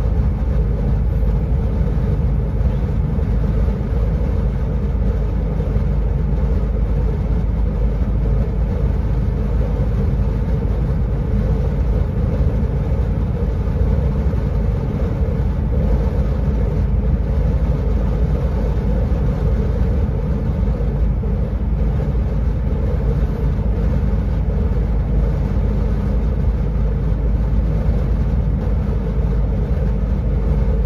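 Steady engine and road drone heard from inside a moving vehicle's cab while cruising, mostly low in pitch and even throughout, with no revving or gear changes.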